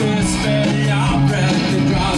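A live rock band playing a song: sustained guitar and bass notes under drums with regular cymbal strikes, and a man singing into a microphone.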